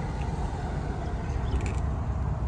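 Steady low outdoor background rumble, with a few faint ticks near the end.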